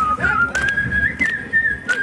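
A man whistling a tune into a microphone: one clear high note held and sliding up and down in pitch, with a few sharp clicks behind it.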